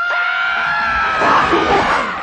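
A long, high-pitched scream held steady, its pitch sinking slightly.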